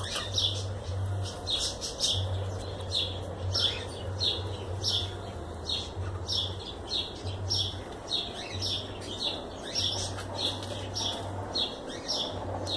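A bird chirping over and over, short high notes that fall in pitch, about two a second.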